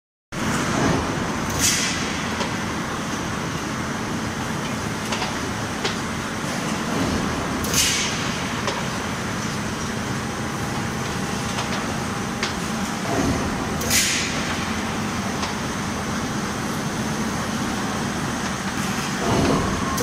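Galvanised-iron coil cut-to-length line running, uncoiling, straightening and feeding steel sheet with a steady mechanical noise. About every six seconds a low thump is followed by a short hiss.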